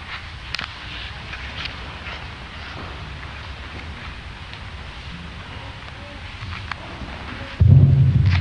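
Faint, distant voice of an audience member asking a question off the microphone, over a steady low rumble. A few light clicks, and a sudden louder low-pitched sound near the end.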